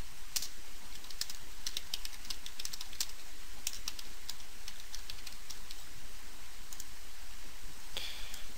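Typing on a computer keyboard: a run of irregular keystroke clicks over a steady low hum.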